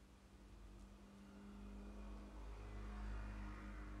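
A quiet, steady low rumble with a faint hum that slowly grows louder from about a second and a half in.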